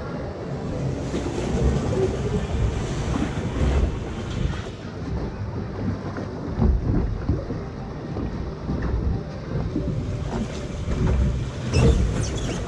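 Mack log flume boat floating along the water trough: water rushing and lapping around the boat, with wind buffeting the microphone and a few dull thumps, the strongest near the end.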